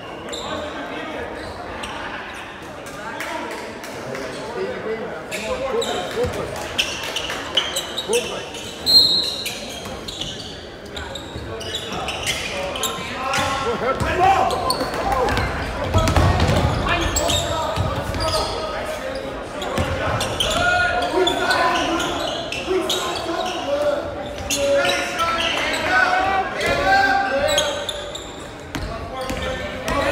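Indoor basketball game sounds: a basketball bouncing on a hardwood court amid players' and spectators' voices, echoing in a large gymnasium. One sharp, louder hit stands out about nine seconds in.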